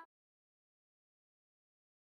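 Digital silence: no sound at all.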